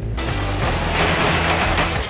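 Sectional garage door being pushed up by hand and rolling open along its tracks, over background music with a steady low beat.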